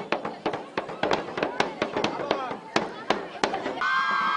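Marching bass drums beaten hard and unevenly with sticks, amid shouting and cheering girls. The drumming stops just before the end, when a steady held sound takes over.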